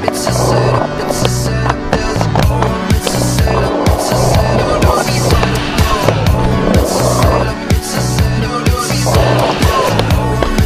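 Skateboard wheels rolling on concrete skatepark surfaces, mixed with a backing music track that has a steady beat.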